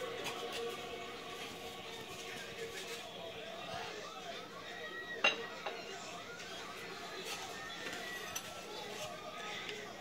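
Quiet handling of plates and a spatula while food is served, with one sharp clink of a utensil against a plate about five seconds in.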